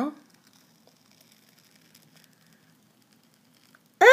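Near silence with a few faint, scattered small ticks as a peel-off clay mask is pulled away from the skin of the face.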